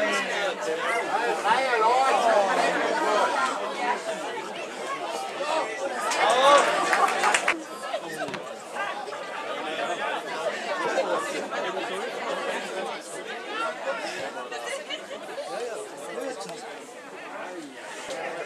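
Indistinct chatter of several people's voices, louder in the first few seconds and again briefly around six seconds in.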